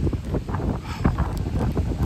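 Gusty tropical-storm wind buffeting the phone's microphone: an irregular low rumble that rises and falls with the gusts.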